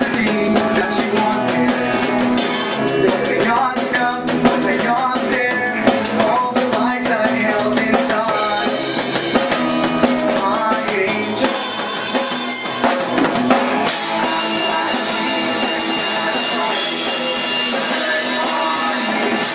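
A rock band playing a song live, with the drum kit prominent.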